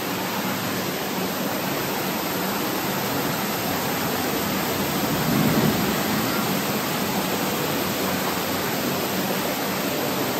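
Water rushing over rocks in a shallow landscaped stream, a steady, even rush that swells slightly about halfway through.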